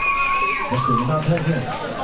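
Live rock band in a club: a long held note, carried over from the music, stops about half a second in, then a man's low voice comes through the PA for about a second.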